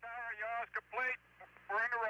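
Speech only: a voice of the launch commentary and air-to-ground loop, sounding thin and radio-like, heard in two stretches with a short gap between them.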